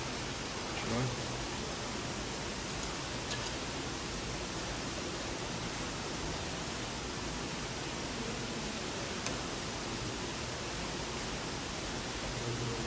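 Steady, even roar of falling water from Niagara Falls.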